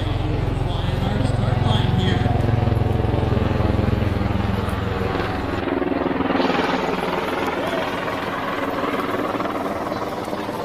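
V-22 Osprey tiltrotor flying overhead, its rotors making a rapid low thudding that is strongest in the first half and fades after about five seconds.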